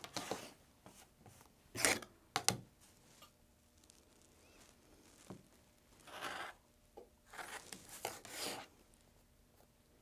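Rotary cutter slicing through the fabric edges of a small pieced quilt block on a cutting mat: several short cutting strokes with quiet pauses between, a couple about two seconds in and a cluster of longer ones later on.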